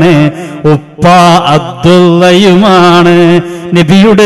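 A male preacher chanting melodically into a microphone in Islamic devotional style: long held notes with ornamented turns, in phrases broken by a short pause about a second in and a dip near the end.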